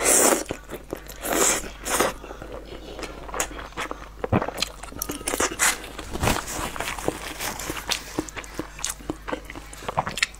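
Noodles slurped up in three loud bursts within the first two seconds or so. Then close-miked wet chewing with many small smacks and clicks.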